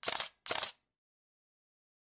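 Camera shutter sound effect: two quick shutter releases about half a second apart.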